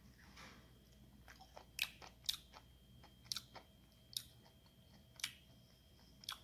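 Faint chewing of juicy loquat flesh: scattered short, wet mouth clicks and smacks.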